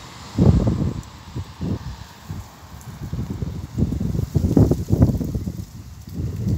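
Wind gusting across a smartphone's microphone: irregular, low rumbling buffets, strongest about half a second in and again from about four to five seconds.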